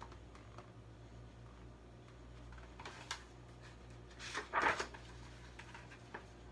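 Pages of a paperback picture book being turned and handled: a brief paper rustle about four and a half seconds in, with a faint click before it, over a low steady hum.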